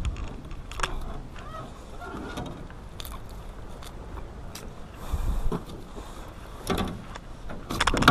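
Scattered knocks and clicks of hands and fishing gear moving about a small aluminium boat while a gut-hooked bass is unhooked, with a low muffled rumble about five seconds in.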